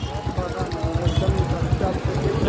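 Low, irregular rumble of wind buffeting the microphone and a motorcycle running while riding in traffic, growing louder. A voice is heard faintly over it.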